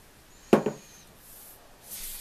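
A single sharp wooden knock about half a second in, as the banjo neck is handled at the bench. Near the end a rubbing sound begins.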